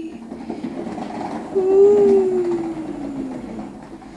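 Plastic wheels of a child's ride-on toy rolling across a small-tiled floor with a steady clattering rattle over the grout joints. About halfway through, a voice calls out one long, falling "wheee" over it.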